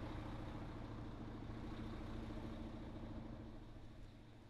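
An engine idling steadily with an even, pulsing hum, fading a little near the end.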